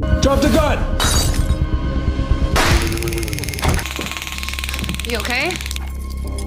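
Sudden crashes and shattering, one at the start and another about a second in, then a long noisy stretch, with shouted voices, over tense background music.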